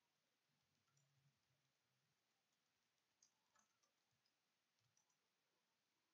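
Near silence, with a few very faint clicks about a second in and around the middle.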